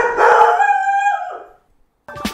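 A single drawn-out howl, held for about a second and a half, sliding down in pitch at the end before it stops.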